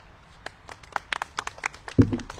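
A small group of people clapping, with scattered, uneven handclaps starting about half a second in. A single thump comes right at the end.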